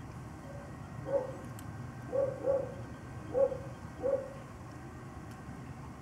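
An animal gives about five short, pitched calls at irregular intervals over a steady low background noise.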